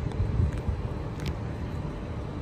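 Steady low rumble of inner-city outdoor background, distant traffic with wind buffeting the microphone, and a few faint clicks.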